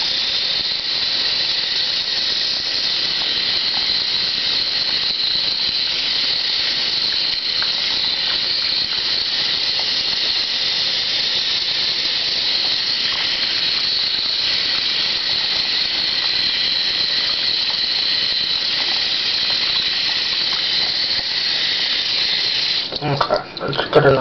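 Bathroom sink faucet running steadily into the basin: a high hiss with a thin whistling tone in it. About a second before the end the flow sound breaks up and turns uneven, as with splashing.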